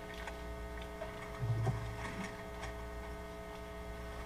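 Faint ticks and rustles of Bible pages being turned at a lectern, over a steady mains hum, with one short low vocal hum about one and a half seconds in.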